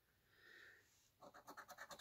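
Near silence, then faint short scrapes from about halfway in: a coin starting to scratch the coating off a scratch-off lottery ticket.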